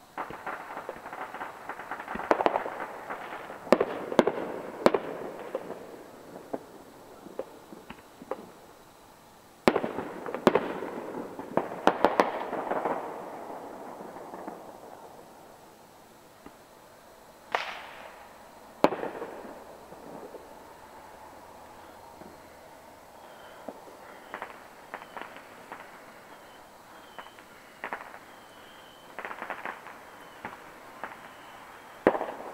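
Fireworks going off: two spells of rapid crackling and sharp bangs, then two louder single bangs a little past the middle, then scattered small pops.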